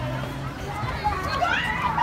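Children playing: faint voices calling and chattering, mostly in the second half, with no close speech, over a steady low hum.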